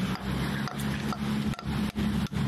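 Claw hammer striking a conch shell, a run of sharp knocks about two a second as the shell is cracked open behind the second horn to free the meat. A boat engine hums steadily underneath.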